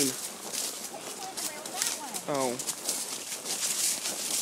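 Horses walking on a leaf-covered dirt trail: hoof steps through dry leaf litter, heard as a scatter of irregular short clicks and rustles.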